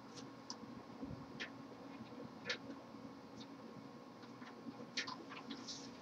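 Faint, scattered small clicks and ticks as a barb fitting is threaded by hand into a 45-degree swivel fitting on a CPU water block, over a faint steady hum.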